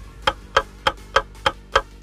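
Clock ticking sound effect: six even ticks, about three a second, used as a time-passing transition.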